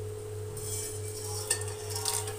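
Whole spices tipped from a steel bowl into hot mustard oil, let cool slightly off the flame, in an aluminium pressure cooker. A faint sizzle starts about halfway through, with a light clink of the bowl about three-quarters through.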